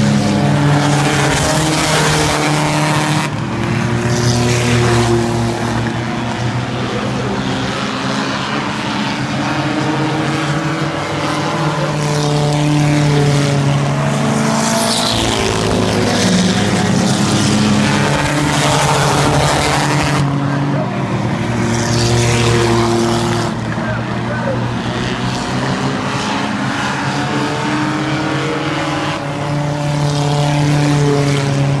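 A field of oval-track stock cars racing, the engines blending into a steady drone that swells and falls away as cars pass close by, most plainly a little before halfway and again about two-thirds of the way through.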